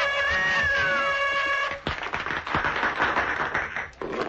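Cartoon soundtrack: a held orchestral chord with a wailing cry rising and falling over it. About two seconds in the chord breaks off into a busier, noisier passage with quick clicks and knocks.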